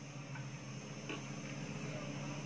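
A bread slice being set down in a dry nonstick frying pan, giving two soft light taps about a third of a second and a second in, over a steady low hum and faint hiss.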